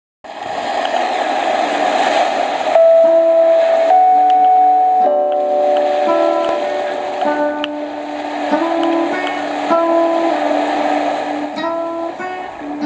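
Guitar through effects playing slow, long-held single notes that change pitch about once a second, as a song's intro. For the first few seconds a band of hiss swells under it before the first clear note.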